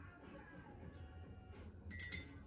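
Near silence: faint room tone with a steady low hum, and a small click near the end.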